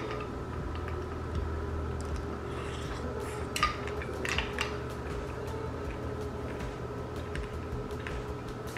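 A few faint clinks of a utensil against a clear plastic container of fruit and ice, over a steady low hum.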